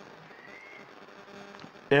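Low steady electrical hum with faint hiss during a pause in speech, with a voice starting just before the end.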